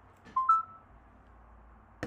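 Short two-note computer alert chime, a lower tone followed by a higher one that rings slightly longer, near the start: the sound of the file transfer to the iPhone completing.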